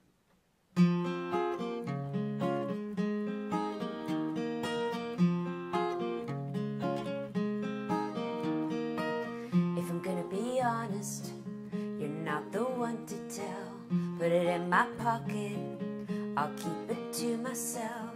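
Solo acoustic guitar starts a song about a second in, playing a repeating figure of notes. A woman's singing voice joins about halfway through, over the guitar.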